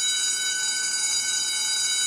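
Electric school bell ringing: one loud, steady, continuous ring that holds unchanged throughout.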